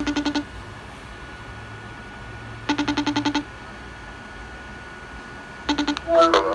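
iPhone FaceTime outgoing call tone: short bursts of rapid trilled beeps, repeating about every three seconds while the call rings out, heard three times.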